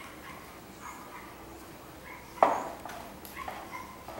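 A dog barks once, loud and sharp, a little past halfway through.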